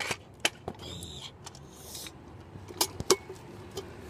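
Kick scooter rolling on rough concrete, with a handful of sharp clicks and knocks from the wheels and deck, two of them close together near the end.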